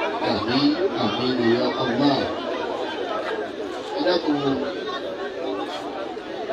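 Chatter: several people talking at once in a babble of overlapping voices.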